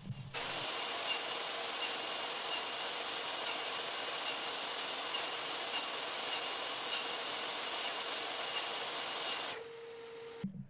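Table saw running steadily with a constant whine and a light tick repeating about every three-quarters of a second, as thin pecan strips are crosscut into short pieces. It stops shortly before the end, leaving only a faint low hum.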